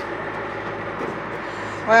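A steady low mechanical running noise, like an engine idling, holding level throughout with no change.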